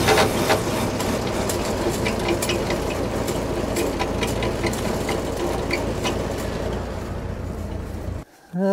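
Tractor engine running steadily, driving the hydraulics of a Ford three-point backhoe as the boom cylinder is retracted, with scattered light ticks, easing off slightly near the end. Oil is spraying from the hydraulic system at this moment, from a steel line worn through at the boom cylinder.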